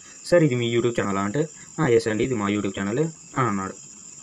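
A person speaking in short phrases, with a steady high-pitched whine in the background.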